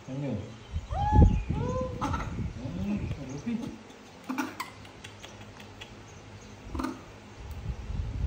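Baby macaque giving several short, squeaky calls that rise and fall in pitch, clustered a second or two in. Low handling noise runs under them, and a few sharp clicks come later.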